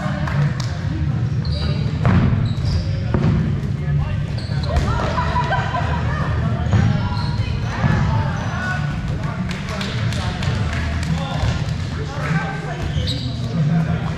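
Rubber dodgeballs thudding and bouncing at irregular moments on a gym floor, echoing in a large hall, with players' voices calling and chattering throughout.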